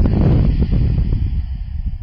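Loud rumble and crackle of something buffeting a close microphone, starting suddenly and easing off slightly near the end.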